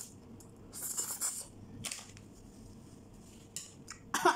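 A person slurping instant noodles off chopsticks: a loud hissing slurp about a second in and a shorter one near two seconds.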